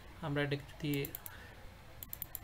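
A quick run of about four computer keyboard key taps about a second in, between two short spoken syllables.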